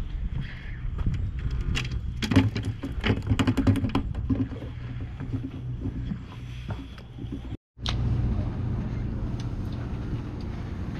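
A small herring flopping on wooden dock planks: a quick run of light slaps and taps about two seconds in, over a steady low rumble.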